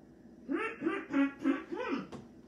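A puppeteer's character voice making a run of about five short nonsense syllables that bend up and down in pitch, starting about half a second in.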